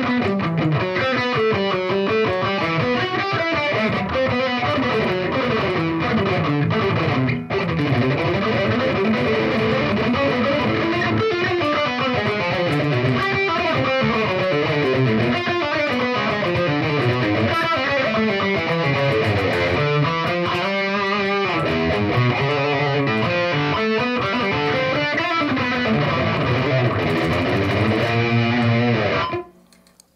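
Electric guitar with distortion playing a run of fast picked single-note metal riffs, with repeated picked notes and pull-offs. The playing stops about a second before the end.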